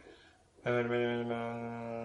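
A man's voice chanting one long note at a steady pitch, starting about half a second in.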